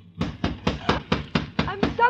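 Someone pounding on a jammed garage door, about eight hard blows at roughly four a second, as a radio-drama sound effect: the sign of someone trapped inside and trying to get out.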